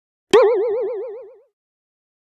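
A cartoon-style 'boing' sound effect: one sudden twang about a third of a second in, its pitch wobbling rapidly up and down as it fades out over about a second.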